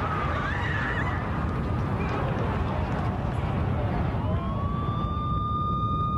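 An emergency vehicle siren winds up about four seconds in and holds a steady wail, over a dense low rumble.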